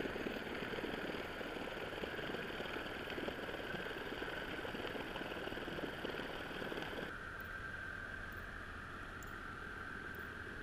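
Steady underwater noise picked up by a camera housing on the seabed: a muffled rumble with dense crackling and a constant high whine. The sound thins out suddenly about seven seconds in.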